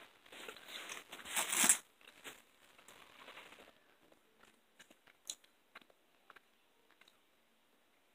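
Close chewing and biting of a Gushers fruit snack, loudest in the first two seconds, then only a few faint clicks.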